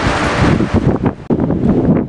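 Wind buffeting a camera microphone: a loud, uneven rushing noise that dips briefly a little past the middle.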